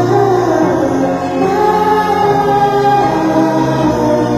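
A sped-up song: sung vocals holding long notes that slide between pitches, over a steady low bass.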